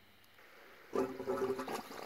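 Septic effluent pouring and splashing into a concrete distribution box, starting suddenly about a second in.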